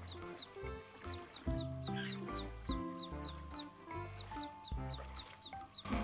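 Background music with a melody of held notes stepping up and down over a bass line, and a steady run of short high chirps about three a second.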